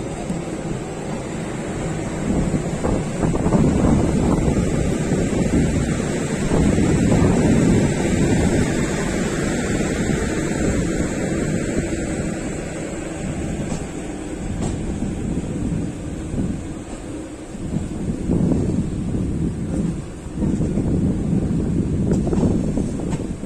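Wind buffeting the microphone over the low rumble of a passenger train, heard from a coach window. The loudness swells and falls.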